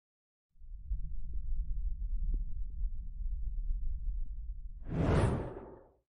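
Logo-reveal sound effect: a low rumble starts about half a second in and runs steadily, then swells into a short whoosh near the end that fades out quickly.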